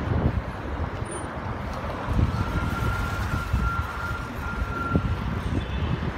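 Street traffic: cars driving past, with wind buffeting the microphone. A faint, steady high tone holds for about three seconds in the middle.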